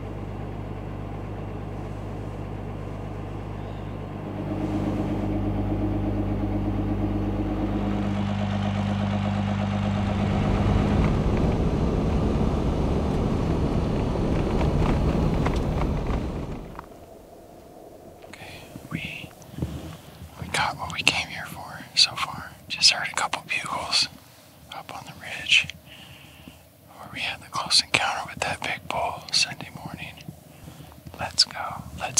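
Pickup truck engine running while driving, heard from inside the cab, a steady drone that grows louder about four seconds in and again around ten seconds, then stops suddenly. After it, a man whispering in short phrases.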